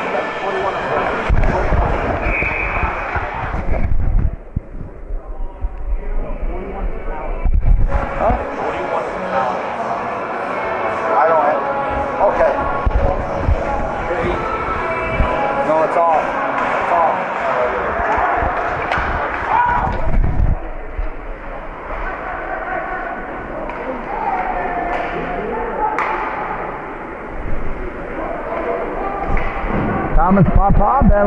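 Voices of people talking in an ice hockey arena, with a few sharp knocks.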